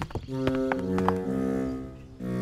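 Background music from the cartoon's score: a few held low notes that step down in pitch about halfway through, with a few light clicks near the start.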